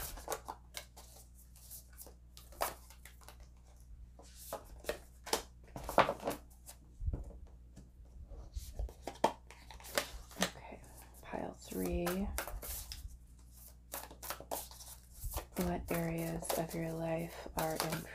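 A deck of oracle cards being shuffled by hand: irregular quick flicks and slaps of cards against each other, with cards drawn and laid down. A voice murmurs briefly near the middle and again near the end.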